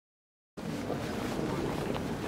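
Silence, then about half a second in a steady low outdoor rumble begins: general ambience with wind on the microphone.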